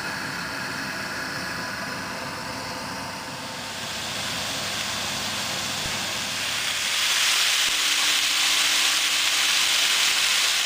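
Diced raw chicken sizzling in a hot non-stick frying pan: the hiss builds about four seconds in and is loudest from about seven seconds. Before it, a steady background hum with faint whining tones.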